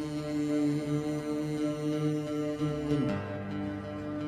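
Live Kabyle folk accompaniment between sung lines: acoustic guitar with steadily held notes underneath, the harmony moving down to a new chord about three seconds in.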